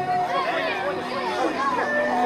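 Voices chattering, with a held bowed note of a morin khuur (horsehead fiddle) that stops shortly after the start.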